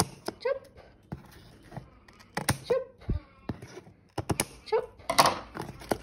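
Irregular sharp snips and clicks of scissors cutting plastic packing strap on a cardboard parcel, and the plastic strap seal being snapped loose, with a low thump on the box about three seconds in.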